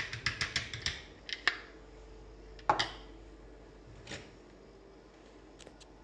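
Plastic clicks and knocks from handling a Philips Senseo milk frother as its lid is taken off and set down: a quick run of clicks in the first second, then a few separate knocks, the loudest near the middle.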